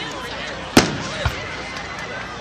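A firework going off with one sharp bang about 0.8 seconds in, then a softer, duller thump about half a second later, over background chatter.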